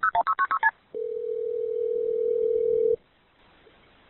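Touch-tone telephone keypad dialing: a quick run of short beeps that ends within the first second, followed by one steady two-second ringing tone on the line. It sounds thin, with the narrow range of a recorded phone line.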